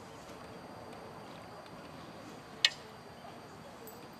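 Low steady background noise with one sharp click about two and a half seconds in.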